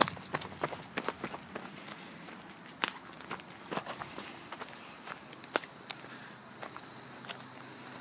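Footsteps of someone walking along a woodland dirt path: uneven steps and scuffs, thickest in the first half. From about halfway a steady high-pitched insect buzz comes up behind them.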